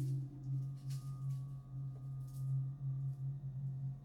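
A sustained low electronic drone made of many clustered oscillator tones, wavering slightly in level, with fainter steady higher tones above it. Soft brief hisses come about a second in and again past two seconds.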